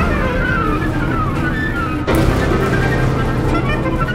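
Amplified contemporary chamber ensemble of flute, harp, cello, piano and a performer at a microphone, playing a loud, dense, noise-laden passage. Short falling glides sound high up in the first second, and a new loud attack comes in about two seconds in.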